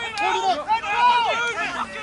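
Several voices shouting over one another, loud and continuous.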